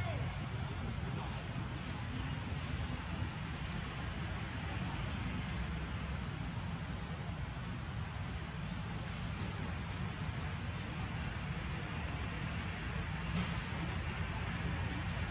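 Outdoor woodland ambience: a steady high-pitched insect drone over a low rumble, with a quick run of short chirps near the end.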